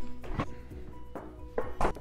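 Background music, with a couple of soft thunks as a refrigerator door is opened and closed.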